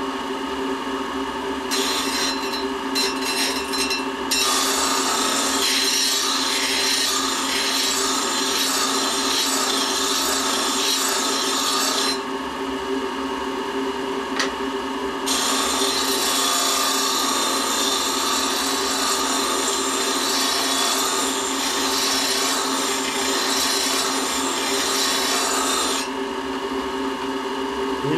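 Diamond grinding wheel running with a steady hum while a 55-degree thread-cutting lathe tool is ground against it, giving a rasping hiss of grinding. The grinding starts about two seconds in, stops for a few seconds around the middle, then resumes and stops a couple of seconds before the end, leaving only the motor hum.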